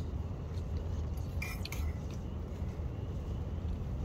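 A spoon clinking and scraping faintly in a metal camp bowl during eating, a few light clicks about a second in and again shortly after, over a steady low rumble.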